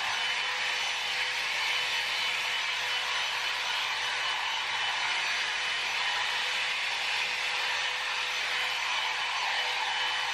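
Jinri Style 2 Go hot air styling brush running steadily on short hair: a constant rush of blown air with a thin, steady whine from its fan motor.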